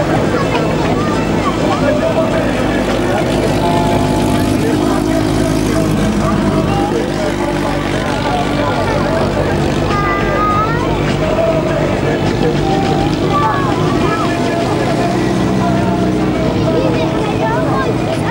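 Several heritage F2 stock car engines, Ford side-valve units, running at low speed and rising and falling in pitch as the cars roll slowly past, with the steady drone of more engines around them.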